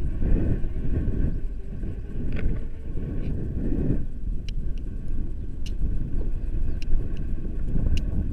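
Airflow buffeting the camera microphone of a tandem paraglider in flight: a steady, loud, low rumble of rushing wind.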